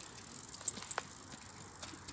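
Quiet open-air background with a few faint, brief clicks around the middle.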